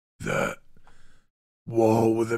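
A man's short, throaty vocal sound close to the microphone, like a brief burp or grunt, followed by a fainter breathy noise.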